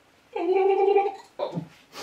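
A person gargling a mouthful of water, a steady gurgle lasting under a second, rinsing out the taste of a foul-flavoured jelly bean. A short faint sound follows.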